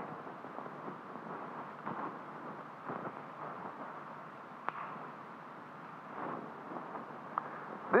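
Quiet room tone with faint shuffling or scraping sounds and two sharp clicks, about four and a half and seven and a half seconds in.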